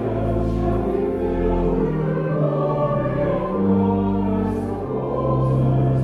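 Congregation singing a hymn over an accompaniment of long held chords with a deep bass line, the chords changing every second or so.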